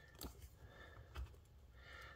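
Near silence: room tone, with a couple of faint soft ticks from hands handling the plastic model hull.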